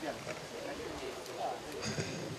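Faint, indistinct voices of people talking in the background, away from the microphone.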